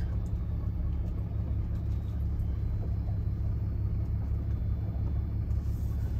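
Pickup truck's engine and road noise heard from inside the cab as it rolls slowly: a steady low rumble.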